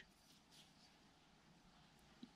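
Near silence: faint background ambience.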